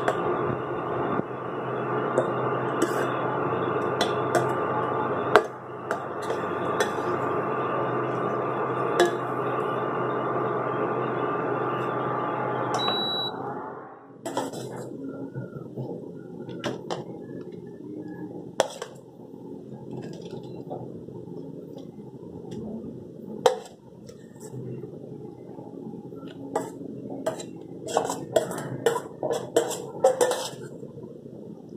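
Steel spoon stirring and clinking in a steel pan over a steady hum. About 13 seconds in a short high beep sounds and the hum stops, leaving scattered metal clinks and taps.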